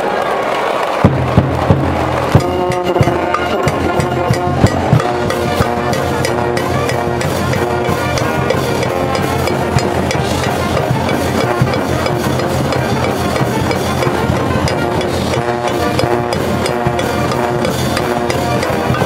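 A high-school cheering band in the baseball stands plays a cheer song on brass and drums. It comes in about a second in with a few loud drum hits, then settles into a steady beat under held brass notes.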